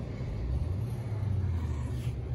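Steady low rumble with no distinct events, an outdoor background rumble.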